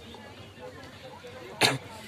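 Faint background voices murmuring, broken a little before the end by a single short, sharp burst of noise, much louder than everything else.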